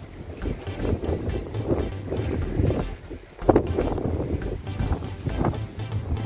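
Wind buffeting the microphone, an uneven low rumble with a sharper gust about three and a half seconds in.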